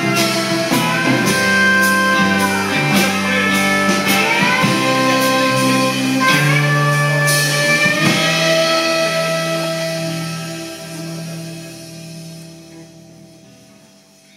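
Live rock band with electric and acoustic guitars, drums and violin playing the final bars of a song, with cymbal hits until a last chord about seven or eight seconds in. The chord is held and rings out, fading slowly away.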